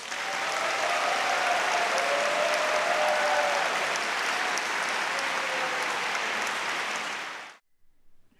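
Concert-hall audience applauding steadily after a soprano aria, cut off abruptly about seven and a half seconds in.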